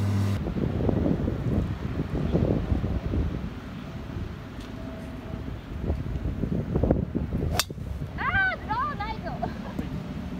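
Wind buffeting the microphone. Near the end comes a single sharp crack of a driver striking a golf ball off the tee, followed by a few brief high chirping calls.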